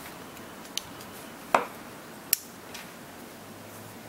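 Kizer Gemini titanium frame-lock flipper knife being flipped open and shut on its ball-bearing pivot: a few sharp metallic clicks of the blade snapping into place, the loudest about a second and a half in with a brief ring.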